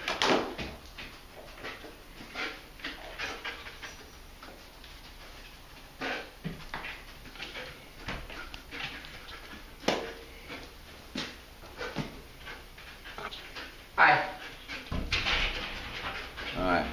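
Explosive detection dog breathing hard and sniffing as it searches a small room, with scattered scuffs and knocks and a louder noise about fourteen seconds in.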